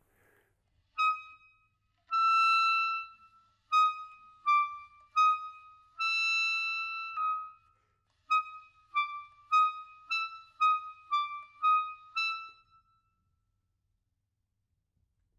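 Buffet Crampon RC Prestige clarinet playing a loud passage of high notes, with short notes around two longer held ones, then a run of about eight notes at roughly two a second. The notes are played with closed fingerings, used for a more stable pitch and better intonation at loud dynamics.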